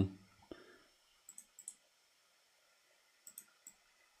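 A few faint computer mouse clicks in small groups, one just after the start, a cluster of four about a second and a half in and three more near the end, with near silence between them.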